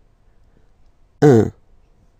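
A man's voice saying a single French vowel sound once, short and clear, as a pronunciation example.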